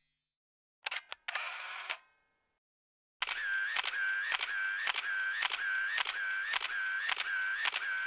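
Camera shutter sound effect: a couple of shutter clicks and a short wind-on burst about a second in, then from about three seconds a rapid run of shutter clicks, about three a second, over a steady motor-drive whine.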